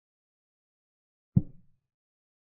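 A chess program's piece-move sound effect: a single short, low wooden knock as a piece is set down on the board, about a second and a half in.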